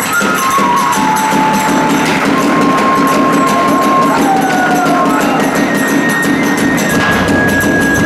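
Hiroshima kagura ensemble playing: a bamboo flute carries a melody of long held notes that step up and down in pitch, over a fast, steady beat of the big barrel drum and clashing small hand cymbals.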